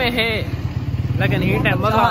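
An engine running at a steady idle, a low pulsing hum, under a man talking.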